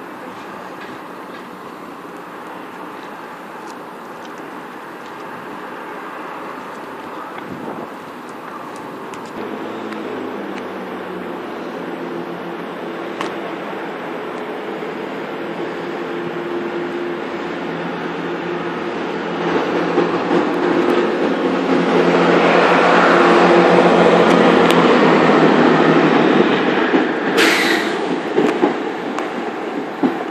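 Chiltern Railways Class 165 diesel multiple unit passing through the station below, its underfloor diesel engines and wheels running with a steady engine drone. The sound grows louder for about twenty seconds and eases slightly near the end. A brief high hiss comes near the end.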